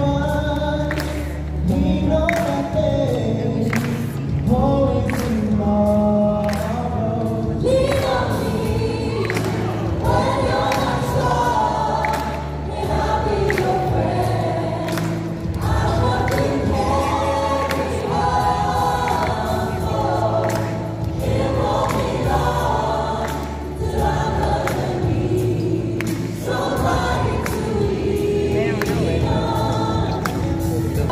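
A choir singing a song with instrumental accompaniment and a steady beat.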